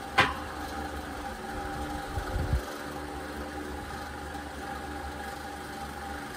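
A machine hums steadily in the background, and a low rumble beneath it drops away a little before halfway. One sharp knock comes just after the start.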